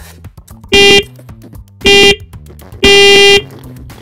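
Race-start countdown beeps from a giant timer: two short electronic beeps about a second apart, then a longer beep on the same pitch about three seconds in, signalling the start as the clock begins running.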